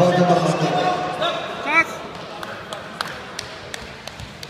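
A man's voice calling out in a sports hall, then a short rising squeak a little under two seconds in, followed by scattered light slaps and knocks from grapplers moving on a wrestling mat.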